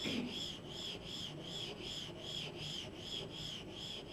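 A bird calling over and over, a short high chirp repeated evenly about two to three times a second.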